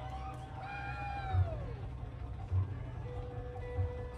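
An afrobeat band on stage in the moments before its first song. Under a steady low hum there are three scattered low thumps. In the first two seconds a pitched tone slides up and then falls away, and about three seconds in a single steady note begins and is held.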